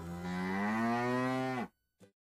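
A cow mooing: one long low moo whose pitch rises slowly and then drops at the end, cut off abruptly about a second and a half in.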